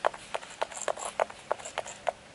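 A pump-action setting spray (MAC Fix+) misting the face in a quick run of about ten short spritzes.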